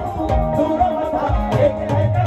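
Live Punjabi folk music played through the stage PA: a sustained keyboard melody over a steady low drum beat.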